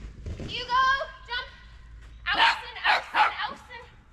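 A small dog barking during an agility run, with a quick run of sharp barks in the second half. A handler's voice calls out over it.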